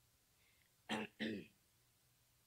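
A woman clearing her throat: a short two-part "ahem" about a second in.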